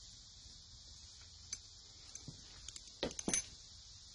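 Metal clinks and light knocks as a Briggs & Stratton V-twin cylinder head and its loose parts are handled and set down on a towel. A few scattered clicks build to a louder cluster of knocks about three seconds in.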